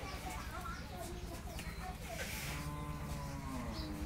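Jersey cattle mooing: one long call starting about two seconds in and lasting about two seconds, its pitch rising slightly and then falling.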